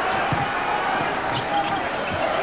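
A basketball being dribbled on a hardwood court, a few low thumps, over a steady murmur from the arena crowd.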